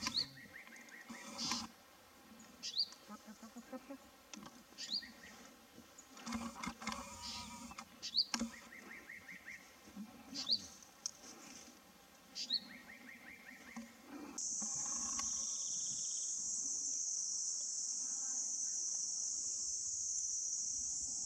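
Grey bushchat singing: short high whistled notes that fall in pitch, repeated about every two seconds, some followed by a scratchy trill. About 14 seconds in this gives way to a steady, high insect drone.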